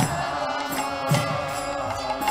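Kirtan: a group chanting a mantra to a drum beat of about one stroke a second, with bright metallic strikes of hand cymbals above the voices.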